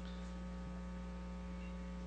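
Steady electrical mains hum picked up on the microphone and sound-system feed, a constant low drone with a few faint higher steady tones.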